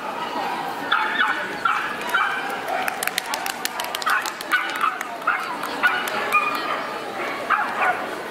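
A dog yipping and whining in short, repeated calls, with a quick run of sharp clicks about three seconds in.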